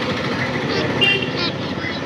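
Motorcycle engine running close by amid street traffic, with short high chirps from the young guinea fowl scattered over it.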